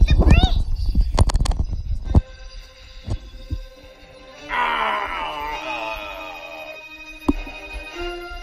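Cartoon soundtrack heard through a tablet's speaker. It opens with heavy low thumps for about two seconds, then a few scattered clicks. From a little past the middle, for about two seconds, comes a shimmering magic-spell effect made of many sliding tones, as the witch's wand casts its spell.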